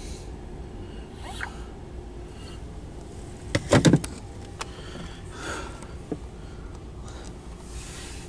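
Low steady rumble inside a car cabin, with a quick run of three sharp clicks about halfway through and a few fainter single clicks.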